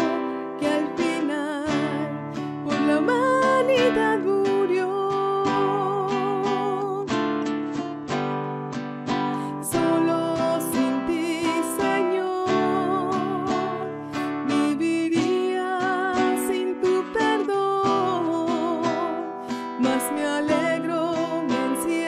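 A woman singing a Spanish-language hymn with a wavering vibrato, accompanying herself on a strummed classical guitar.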